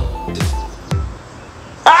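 Background music with two deep bass-drum hits. Near the end a loud, long scream cuts in: the screaming-marmot meme sound effect.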